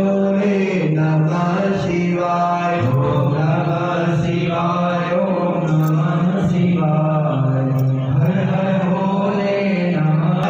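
Vedic Sanskrit mantra chanting by a male voice, holding syllables on a few steady pitches that step up and down.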